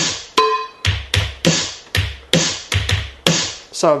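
E-mu Drumulator drum machine playing a beat from its bank-2 Digi Rock EPROM kit: a steady run of sharp electronic drum hits with deep bass drums, about two to three hits a second. One short ringing pitched hit comes about half a second in.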